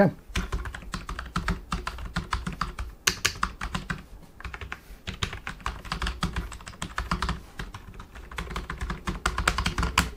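Typing on a Seenda full-size wireless keyboard with low-profile, dished keycaps: a rapid, continuous run of key presses with a brief pause about halfway. The keys sound quite muted.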